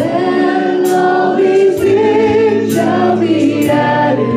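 Gospel worship song: a group of voices singing over sustained keyboard or organ chords, with a steady beat of about one stroke a second.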